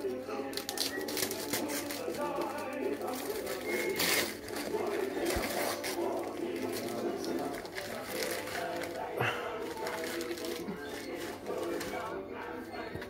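Wrapping paper crinkling and tearing as a present is unwrapped by hand, over background music and voices.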